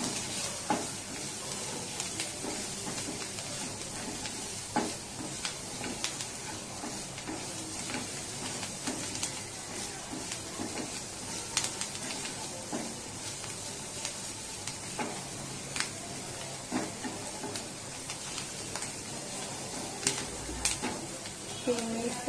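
Chopped green chillies sizzling in hot oil in a nonstick kadhai, stirred with a wooden spatula that scrapes and knocks against the pan now and then.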